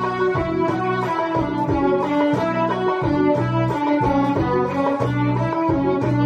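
A small section of violins playing a rhythmic piece together over a recorded backing track with a steady, repeating low bass line.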